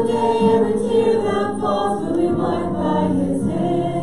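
Worship song being sung by several voices together over a video backing track, with long held notes.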